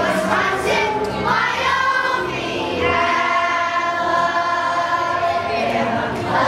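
Children's choir singing, moving through a phrase and then holding a long, steady note for the second half.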